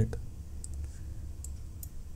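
A few faint, sharp clicks over a low steady hum: a computer pointing device clicking as marks are drawn on an on-screen slide.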